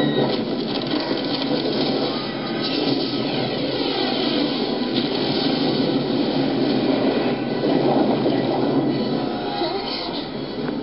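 A loud, steady rumbling roar from a film soundtrack's ship-sinking scene, dense noise without clear speech.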